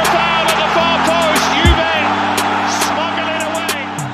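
Background music with sustained low chords layered over the noise of a stadium crowd from the match broadcast. The crowd noise eases off near the end.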